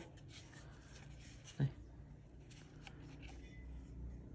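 Faint rustling and a few light clicks of hands handling a knife in a rosewood sheath bound with braided cord.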